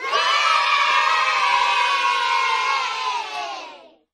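A group of children cheering and shouting together, one held cheer of many voices that fades out near the end.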